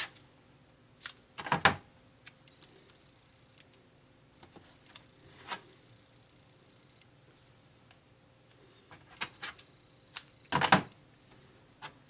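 Paper-craft tools handled on a table: scissors and a roll of double-sided tape picked up, used and set down, giving scattered clicks and taps. Two louder bursts stand out, about a second and a half in and near the end.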